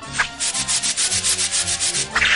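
Fast rhythmic scratching or rubbing sound effect from a cartoon soundtrack, about eight rasping strokes a second.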